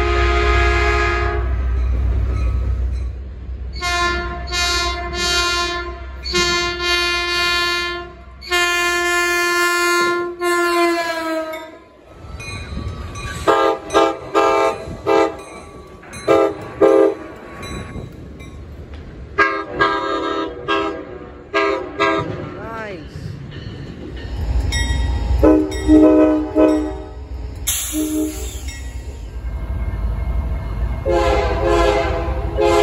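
Passenger train horns sounded in a long string of blasts, a railfan horn show, from several trains in turn. The first horn's chord drops in pitch at the end of its last blast just before ten seconds in, and the low rumble of a train runs under the horns at the start and near the end.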